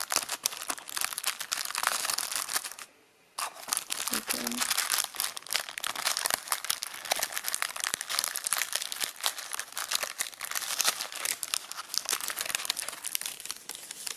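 Paper packaging of a small cardboard gift box being handled and opened by hand: near-continuous crinkling and rustling with clicks, with a brief pause about three seconds in.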